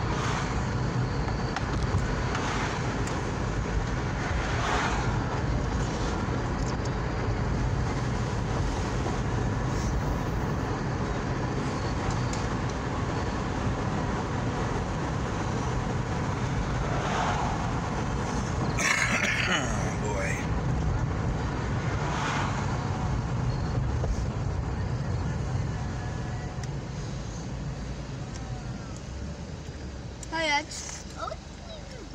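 Road and engine noise heard inside a moving car: a steady low rumble that gets quieter over the last few seconds.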